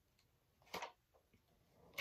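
Faint, short rustle of thin protective plastic film being peeled off an eyeshadow palette, about three-quarters of a second in, followed by a couple of tiny ticks and another brief rustle at the very end.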